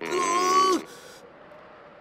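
A male cartoon voice giving one long strained groan, under a second, that drops in pitch as it ends, as he strains to pull his hands free of an ice wall. A quiet background hiss follows.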